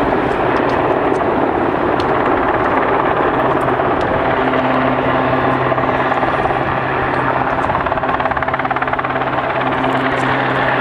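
Strong wind buffeting the camera's microphone, a loud, steady rushing noise. A faint low steady hum joins about three seconds in.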